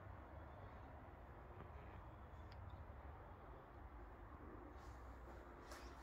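Near silence: room tone with a faint steady low hum, and a couple of faint clicks near the end.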